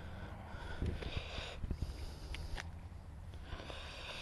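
Gloved hands crumbling a lump of dug soil, faint rustling with a scatter of small crackles and clicks, busiest about a second in.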